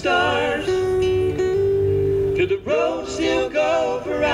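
Acoustic country song performed live: acoustic guitars strumming under singing, with a voice holding one long note for nearly two seconds in the middle.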